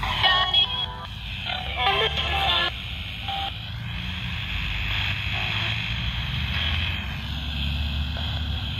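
Ghost-hunting spirit box sweeping through radio stations through a small speaker: steady static, broken twice in the first three seconds by short chopped snatches of voice or music.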